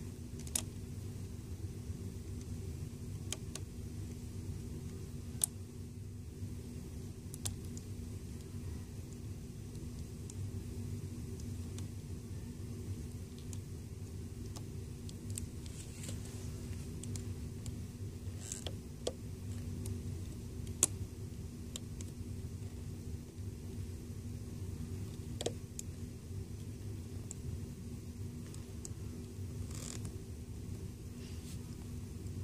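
Scattered faint clicks of a metal loom hook against the plastic pegs of a rubber-band loom as bands are lifted over, two of them sharper, over a steady low hum.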